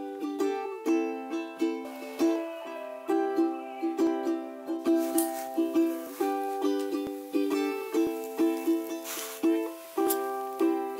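Background music: a bright plucked-string tune with a quick, steady rhythm.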